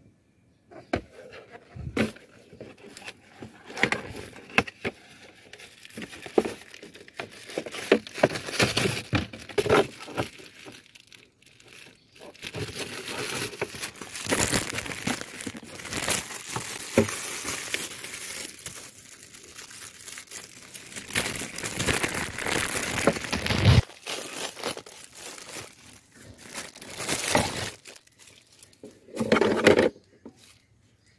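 Plastic wrapping and cardboard packaging of a new cabin air filter crinkling and tearing as the filter is unpacked and handled, in irregular bursts of rustling with sharp clicks.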